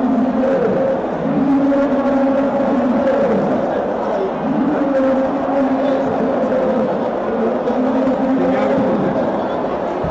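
People's voices calling out in a large sports hall in long calls held at a steady pitch, over a background of crowd noise.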